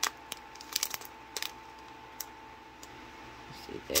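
Small sealed plastic bags of diamond-painting gems being handled: irregular sharp clicks and crinkles as the loose gems shift inside and the plastic rustles.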